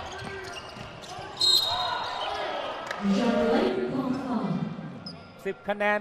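Arena basketball game sound: a steady hubbub from the crowd in the stands, louder shouting voices in the middle, and a basketball bouncing on the hardwood court. A short, sharp high-pitched squeal comes about a second and a half in.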